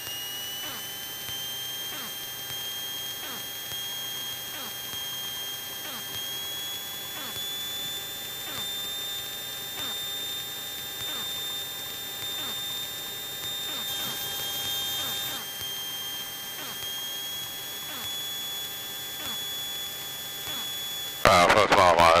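Steady high-pitched electrical whine with overtones in a Cessna 172's headset intercom audio. It rises slowly in pitch over the first several seconds and drops a step about two-thirds of the way through, typical of alternator whine that follows engine speed.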